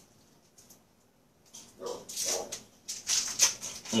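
Near silence for about the first second and a half, then irregular crinkling and rustling of plastic wrapping as hands handle a cheese slice and burger bun.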